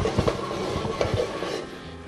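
A spoon knocking and scraping lightly against a metal pan a few times over a soft steady sizzle from the still-hot pan, which fades slightly toward the end.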